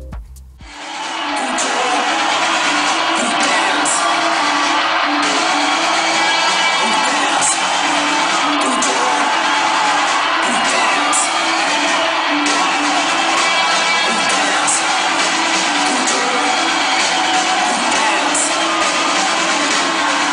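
Loud dance music from a club sound system during a live DJ set, with crowd noise, as heard in amateur live footage with little bass.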